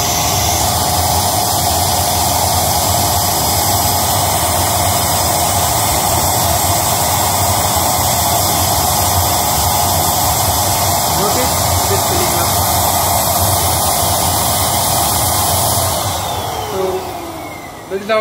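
Electric balloon pump running loud and steady, blowing air through its nozzle into the valve of an inflatable ball pit's ring. About two seconds before the end the motor winds down and its pitch falls.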